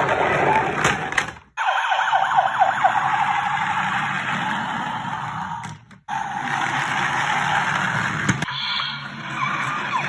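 Electronic siren sounds from battery-powered toy emergency vehicles, wailing up and down with a run of fast yelping sweeps about two seconds in. The sound breaks off abruptly twice.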